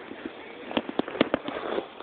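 A quick, irregular run of sharp clicks and knocks, about eight within one second, starting just under a second in.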